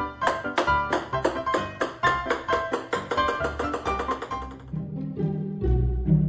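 Background music: a quick run of light, repeated plucked-sounding notes that speeds up, then thins out near the end into a few lower, longer notes.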